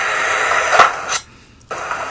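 Steady background hiss with a faint click about a second in, broken by a short drop-out to near silence just before the end.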